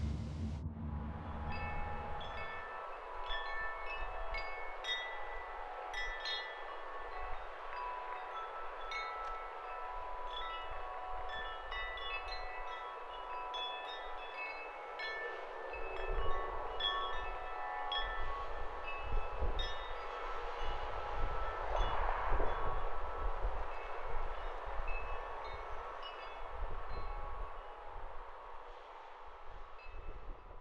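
Chimes ringing in irregular, scattered strikes at many different pitches over a steady rushing noise, with low rumbling gusts coming in from about halfway through.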